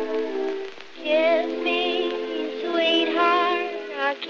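An early sound-film recording of a dance orchestra playing a waltz: sustained chords, a brief dip just before a second in, then a melody with a wide vibrato rising over the accompaniment. The sound is cut off in the treble, as in old film soundtracks.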